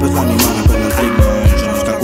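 Trap instrumental beat playing with no vocals: deep 808 bass, kick hits that drop in pitch, hi-hats, and a held synth note from about half a second in until near the end.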